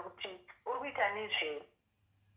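Speech only: a person talking in a voice that comes over a phone line, stopping a little before the end.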